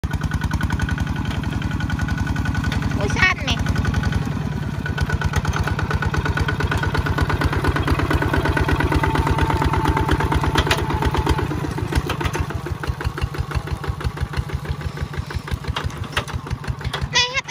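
Two-wheel walking tractor's single-cylinder diesel engine chugging in an even, rapid rhythm as it pulls a disc plough through paddy mud. A short, sharp noise rises above it about three seconds in.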